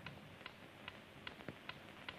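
A clock ticking faintly and evenly, about two and a half ticks a second, with one slightly heavier knock about halfway through.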